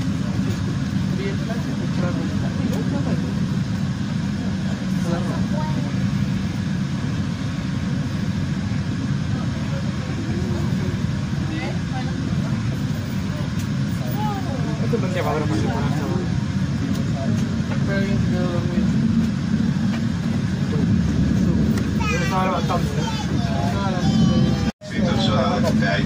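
Steady low rumble of a passenger train running on the tracks, heard from inside the carriage. Voices talk faintly at times, more plainly near the end.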